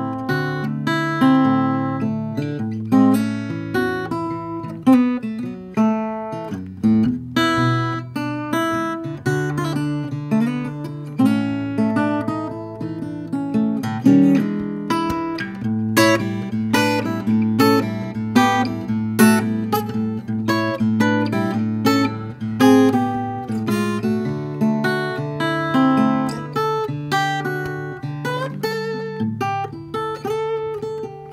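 Guild P-240 Memoir parlor acoustic guitar, with a solid spruce top and mahogany back and sides, played fingerstyle: a continuous run of plucked melody notes over held bass notes.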